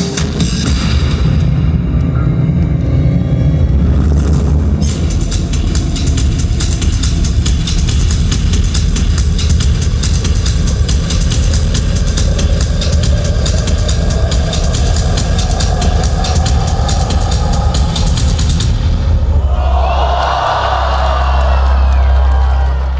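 Loud dance-routine music played over a stage sound system, with deep bass and a fast, busy beat. Near the end the beat stops, a low bass tone carries on, and crowd cheering swells up.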